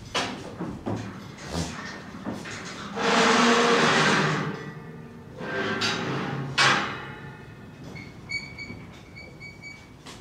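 Metal rattling and scraping at a steel stock trailer as goats are loaded, loudest in a long grating scrape about three seconds in and a shorter one around six seconds that ends in a sharp clank. A few short high chirps come near the end.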